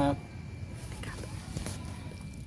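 A man's word trails off at the start, then a pause filled only with a low, steady background rumble.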